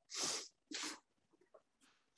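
A person's quiet breathy laugh: two short puffs of breath, one right at the start and one just before the first second is out.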